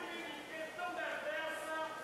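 Congregation reading a Bible verse aloud together, faint and distant from the microphone.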